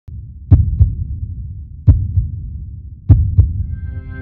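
Heartbeat sound effect: three double thumps, lub-dub, about a second and a half apart over a low hum, with synth music tones fading in near the end.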